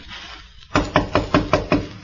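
Knocking on a door, a radio-drama sound effect in an old, narrow-band recording: a run of about six quick, even raps, about five a second, starting near the middle.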